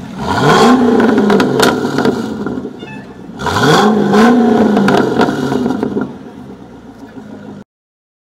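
Chassay-tuned Chevrolet Corvette C6 V8 revved twice through its quad exhaust, each rev climbing quickly, holding briefly, then falling back, with a few sharp pops. It settles to an idle before the sound cuts off near the end.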